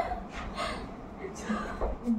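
A woman's voice giving brief spoken cues, mixed with a sharp audible breath.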